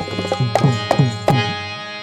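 Tabla playing in a folk music ensemble, the bass drum's pitch sliding down after each stroke, over a steady held chord. The drumming stops about three-quarters of the way through and the held notes ring on, slowly fading.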